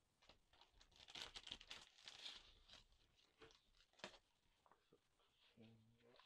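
Faint rustling and crinkling of paper and packaging as the contents of a camera box are handled and an instruction manual is taken out, in quick irregular bursts that are densest about one to two and a half seconds in.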